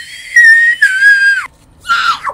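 A very high-pitched voice shrieking in excitement: long held squeals, nearly steady in pitch and very loud, cut off about a second and a half in.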